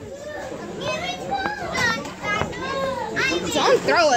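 Young children calling out and giving short high-pitched cries while playing chase, several voices overlapping.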